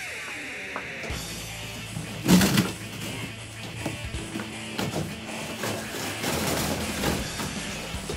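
Loud, intense background music, with cardboard being ripped and broken apart by hand beneath it. The loudest sound is a sharp burst about two seconds in.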